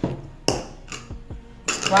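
A few light knocks and a short clatter of kitchen things being handled, as a plastic measuring cup is set down on a wooden tabletop beside a pot. A woman starts speaking near the end.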